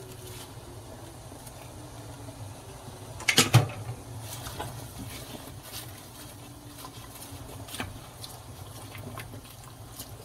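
A pot of boiling water with a batch of wild chwinamul (aster) leaves blanching in it, stirred with a wooden spoon: a soft bubbling over a steady low hum, with small clicks and one louder knock about three and a half seconds in.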